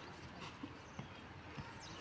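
Faint scuffing and a few soft knocks of two people grappling on a concrete floor, bodies and clothing shifting as a ground lock is held.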